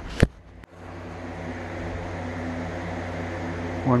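Two sharp clicks right at the start, then a steady low mechanical hum with no other events until a voice begins at the very end.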